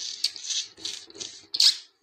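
Close-miked mouth sounds of eating by hand: a run of about six short smacking and sucking noises as curry is eaten and licked off the fingers, the loudest about three-quarters of the way through.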